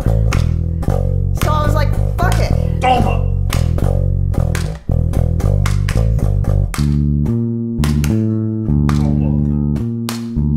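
Electric bass guitar playing an improvised plucked line. About five seconds in it breaks off briefly and resumes in a higher register with more separated notes.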